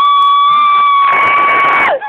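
A person's long, high-pitched shout or whoop held on one pitch, gliding up into it and dropping away near the end, over crowd noise.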